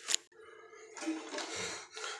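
Water spray from the open toilet fill valve cutting off with a click just after the start as the supply is shut off, followed by faint handling noises in the tank.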